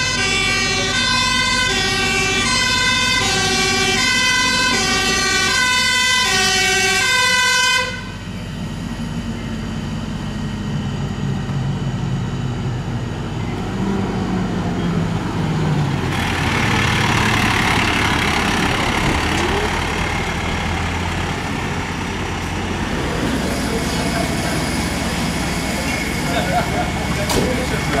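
A fire engine's two-tone siren, alternating steadily between its two notes, which stops abruptly about eight seconds in. After that come the diesel engines of passing fire trucks, one dropping in pitch as it goes by, over traffic noise.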